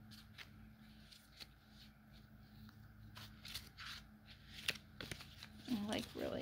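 Soft, scattered rustling and light taps of a tarot deck being handled and shuffled, getting busier about halfway through, over a steady low hum.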